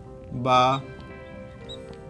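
Marker squeaking faintly in short high chirps as it writes on a glass lightboard, over soft background music with long held notes; one spoken syllable is heard about half a second in.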